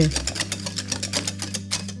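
Wire balloon whisk beating a runny egg, sugar and condensed milk batter against the sides of a glass bowl: a fast, even rhythm of strokes.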